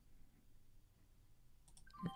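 Near silence: a low room hum with a few faint clicks of a computer mouse as a trade order is placed.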